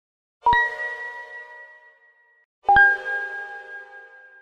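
Two bell-like metallic dings in a logo sound effect, about two seconds apart, the second a little lower in pitch; each strike rings on and fades away over a second or so.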